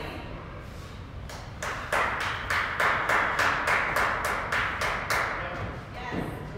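Hands clapping in a steady rhythm, about three claps a second, starting about a second and a half in and stopping a little after five seconds.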